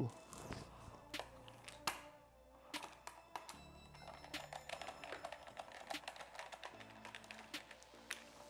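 Small clicks of a T20 Torx screwdriver backing a screw out of a plastic car side-mirror housing, coming thick and fast in the second half, over background music.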